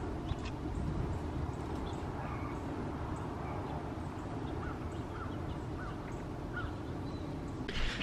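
Wind buffeting the microphone as a steady low rumble, with faint, scattered bird chirps over it.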